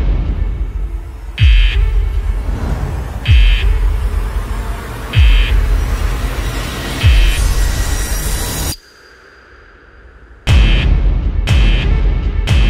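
Trailer score of deep booming hits about every two seconds, each a low boom that falls in pitch together with a short, harsh, alarm-like buzz. About nine seconds in it drops almost to nothing, leaving a faint high tone for a second and a half, then the hits come back faster.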